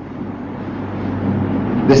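A low rumbling noise that swells steadily louder, then a man's voice begins at the very end.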